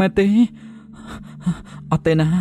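A brief spoken utterance, then quick gasping, panting breaths from a voice actor over a steady low hum, with a short voiced sound near the end.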